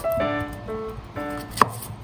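A knife cutting through a peeled pear and knocking on a wooden cutting board, with one clear knock about one and a half seconds in. Light background music with bright, steady notes plays under it.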